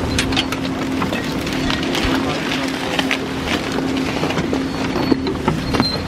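Steady mechanical hum of a chairlift's machinery at the boarding area, with sharp clacks of skis, poles and gate parts and voices in the background.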